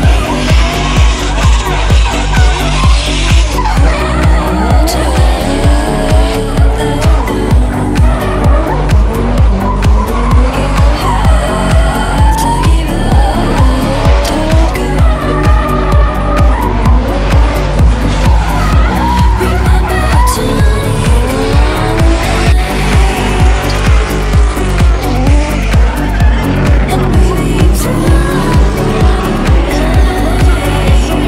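Music with a steady beat of about two beats a second, with drift cars' engines revving and tyres squealing under it.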